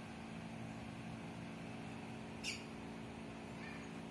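Faint steady background hum, broken by one short high-pitched chirp that slides down about two and a half seconds in, and a fainter short chirp near the end.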